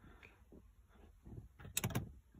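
Round metal push-button switch pressed under a car dashboard: a quick cluster of sharp clicks near the end, as the button's red LED ring goes out.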